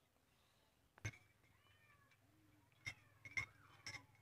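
Near silence, with a few faint clicks and some faint animal calls that rise and fall in pitch.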